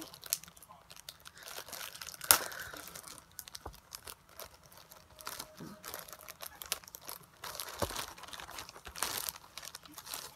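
Plastic packaging of a small cosmetics sample being crinkled and torn open by hand, in irregular rustles with a sharp snap about two seconds in and a denser burst of crinkling near the end.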